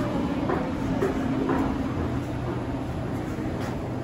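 KTX-Eum electric multiple-unit train moving slowly alongside the platform, its steady hum fading out a little past halfway as it slows. Three light knocks about half a second apart near the start.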